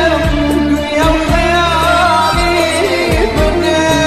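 Kurdish pop song: a male singer holding long, wavering notes over a steady drum beat, about two hits a second, and bass.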